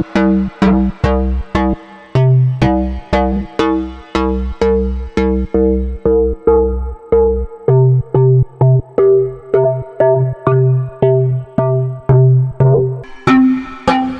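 Xfer Serum software synthesizer playing a looping pattern of short saw-wave notes, about two and a half a second, through its Scream 2 low-pass filter. The filter's scream and resonance are being turned, so the brightness of the notes shifts, and the low notes change pitch every few seconds.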